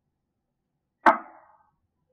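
A single sharp knock about halfway through, with a brief ringing tail, as a kitchen item is handled at the counter.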